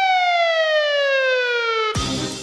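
An added cartoon-style sound effect: a single buzzy electronic tone that sweeps quickly up, then slides slowly and steadily down in pitch for about two seconds and cuts off abruptly near the end.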